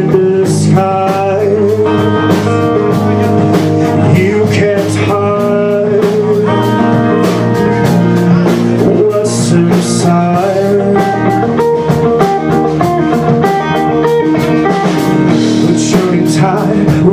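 Live rock band playing: an electric guitar picking out a melody over bass guitar and a drum kit keeping a steady cymbal beat.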